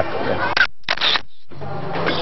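Camera-shutter sound effect at a white-flash cut: a short, sharp click-like burst in two parts, set off by brief silence. A man's brief spoken 'ya' comes just before it, and music with a steady beat starts near the end.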